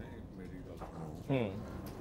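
A man's short, low "hmm" about a second in, between lines of speech, over faint room tone.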